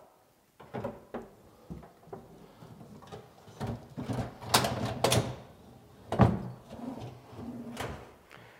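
An IKEA Maximera kitchen drawer being handled on its metal slide rails: scattered clicks and rattles, a sliding rush about halfway through, then one sharp knock, the loudest sound, a little after that.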